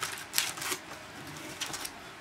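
Foil-wrapped trading-card packs and their cardboard box rustling and crinkling in several short bursts as the packs are pulled out of the box by hand.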